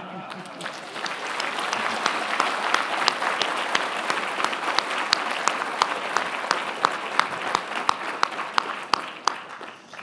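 Audience applauding, the clapping building up over the first couple of seconds and dying away near the end.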